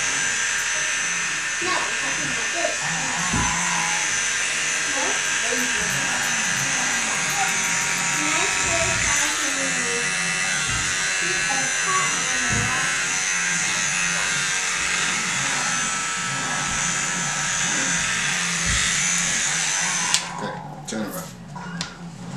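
Electric hair clippers running steadily as they cut hair at the back of a boy's neck, switched off suddenly near the end.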